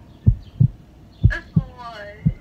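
Deep, short thumps at an uneven beat, two or three a second, with a voice coming in about halfway through.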